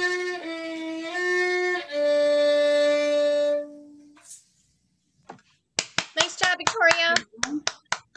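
A solo violin ends a short melody: a few bowed notes, then a long held low final note that fades out about four seconds in. After a short pause, voices start talking near the end.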